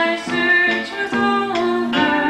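Live acoustic country music: a steel-string acoustic guitar under a held, sliding melody line, with no words sung, as captured by a small 8mm camcorder's built-in microphone.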